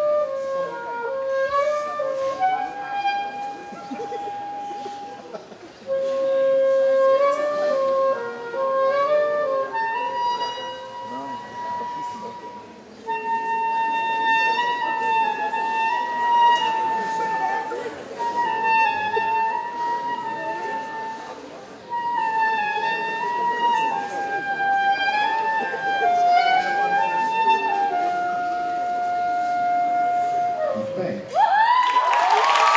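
Soprano saxophone playing a slow unaccompanied melody, one note at a time, in phrases with short breaks between them, ending on a long held note.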